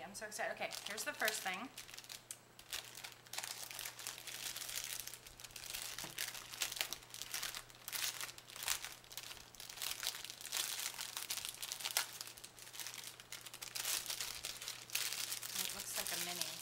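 Clear plastic wrapping crinkling and crackling irregularly as hands work it open and pull it off a package.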